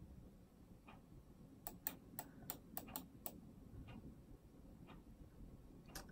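Near silence with about ten faint, sharp clicks, most of them bunched together in the middle, from the computer's controls being worked to scroll through a text document.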